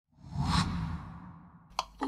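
A whoosh sound effect that swells quickly and fades away over about a second, followed by a single short click near the end.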